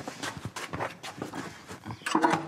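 Irregular knocks and scrapes of a large stretched canvas, its wooden stretcher frame bumping and dragging on the floor and wall as it is manhandled upright.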